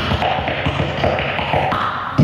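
Beatboxing into a handheld microphone cupped over the mouth: a fast run of clicks and taps made with the mouth, amplified through the microphone.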